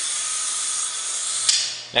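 Compressed-air vacuum ejector of a Piab VGS 2010 gripper hissing steadily with a faint whine as it draws vacuum. It stops with a click about one and a half seconds in, and the hiss dies away.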